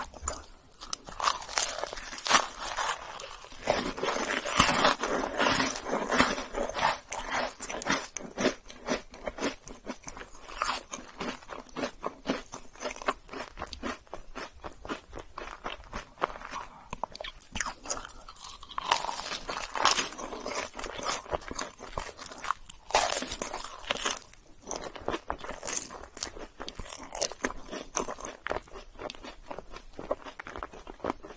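Close-up eating of a chocolate cookie topped with roasted marshmallow: crunchy bites and chewing in a dense stream of quick clicks. The eating is louder for the first several seconds and again about two-thirds of the way through.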